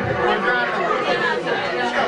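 Several people talking over each other in a room: chatter.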